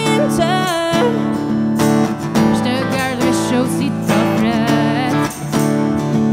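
Live country band music: a strummed acoustic guitar with electric guitar and tambourine, playing steadily with a wavering lead line on top.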